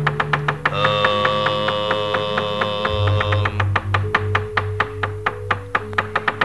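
Javanese gamelan playing behind a fast, even run of sharp knocks from the dalang's wooden cempala and metal keprak plates. Held metallic tones ring over the knocks, and a lower pulsing beat comes in about halfway.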